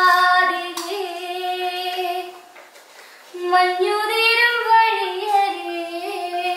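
A woman singing unaccompanied in long held, slowly gliding notes: one phrase, a short break a little after two seconds in, then a second phrase.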